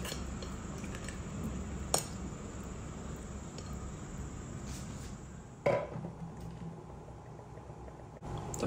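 Two sharp clinks of dishware in a kitchen, a short one about two seconds in and a louder, briefly ringing one near six seconds, over a low steady hum.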